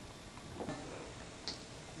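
Quiet room tone with a few faint, irregular clicks.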